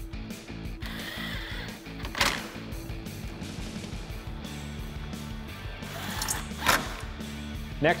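Background rock music with guitar. Under it, a cordless ratchet briefly whirs about a second in as it drives in an 8 mm grille screw, and two sharp clicks follow later.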